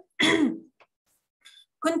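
A woman clears her throat once, briefly, in a pause between sentences.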